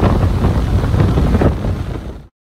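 Strong wind buffeting the microphone: a loud, gusting low rumble over choppy water. It fades down near the end.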